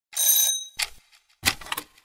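Logo-animation sound effects: a short bright bell ding, then a few sharp mechanical clicks and clunks like gears engaging.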